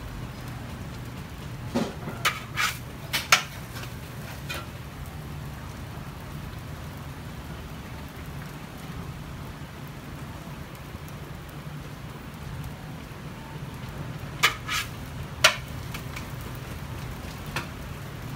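Oyster omelette frying on a flat iron griddle with a steady sizzle. Metal spatulas clack and scrape on the griddle in a few sharp strikes about two to three seconds in, and again twice around fourteen to fifteen seconds in.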